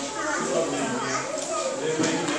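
Many children's voices chattering at once: a dense, unbroken babble of overlapping chatter, with no single voice standing out.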